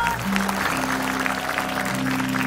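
Studio audience clapping over a show's music sting of held low notes.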